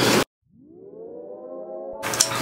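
A siren-like tone added in the edit: it fades in, sweeps up in pitch and levels off, then cuts off abruptly at the scene change.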